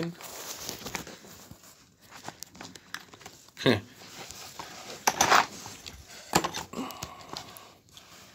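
Rustling and light clicks of a phone camera being handled and repositioned, with a louder rustle about five seconds in and a short spoken 'huh'.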